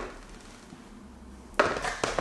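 A plastic basin knocking and scraping against a tabletop as it is pushed into place, in a short burst of knocks about a second and a half in, after a quiet stretch.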